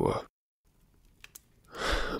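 A voice finishing a word, then a pause of near silence with two faint mouth clicks, and an audible in-breath near the end as the narrator readies to speak again.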